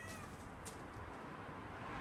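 A kitten's short, faint meow right at the start, followed by a light click.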